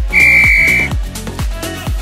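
A single electronic timer beep, one steady high tone lasting under a second, marking the end of a work set and the start of a rest period. Electronic dance music with a steady beat plays underneath.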